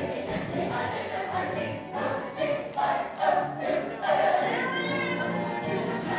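A large group of voices singing a song together as a chorus, the lines rising and breaking phrase by phrase.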